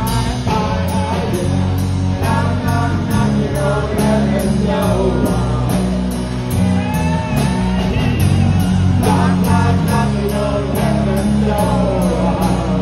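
Live rock band with electric guitars, bass guitar and drum kit playing a passage without words: a steady hi-hat beat under a lead melody with sliding, bent notes.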